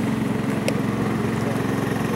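A small engine running steadily, a constant drone, with one sharp smack about two-thirds of a second in as the baseball meets the catcher's gear.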